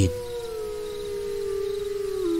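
Dogs howling together as a sound effect: long drawn-out howls that slowly fall in pitch.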